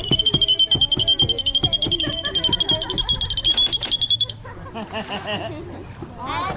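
A dolphin calling with its head out of the water: a high, steady squealing whistle, held about four seconds with a fast fluttering pulse, then switching to a thinner, higher tone that stops near the end.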